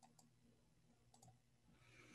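Near silence with a few faint clicks: a pair right at the start and another pair about a second in.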